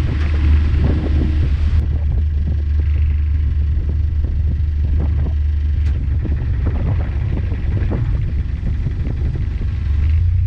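Narrowboat's diesel engine ticking over in a lock, a steady low throb.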